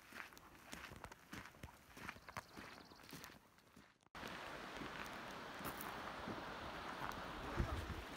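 Footsteps crunching on a gravel road, an irregular walking pace, for about four seconds. After a sudden break the footsteps stop and a steady rushing noise takes over.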